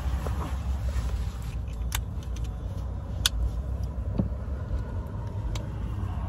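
A low steady rumble, with a few sharp clicks scattered through it as weighted-vest buckles and straps are fastened.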